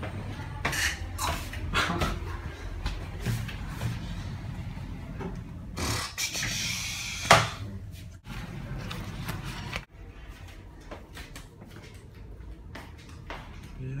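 Low steady hum inside a moving lift car, with scattered knocks and clicks of a handheld camera being handled, and one sharp knock about seven seconds in.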